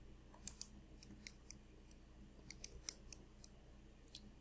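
A run of about a dozen light, separate clicks of keys being pressed, as an inverse tangent of 312 over 168 is punched into a calculator.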